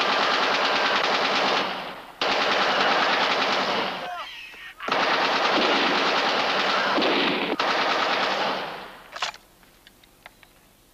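Rapid automatic machine-gun fire from a war-film battle soundtrack, in three long sustained bursts with short breaks between them, then a single sharp shot near the end before it falls quiet.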